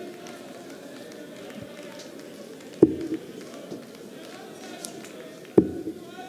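Darts thudding into a Unicorn Eclipse bristle dartboard: two sharp strikes about three seconds apart, the second one louder, over a low steady murmur from the hall.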